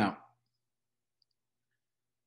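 A man's voice saying one short word, then near silence with two faint ticks about a second in.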